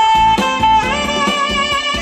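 Alto saxophone playing a melody live, holding one long note and then a second, slightly higher one, over a backing accompaniment with a beat.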